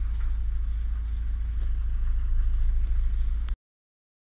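A steady low rumble with a few faint clicks, which cuts off suddenly about three and a half seconds in.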